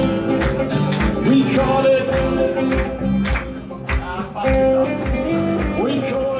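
Live band playing a song: acoustic guitar and electric bass over a steady drum beat.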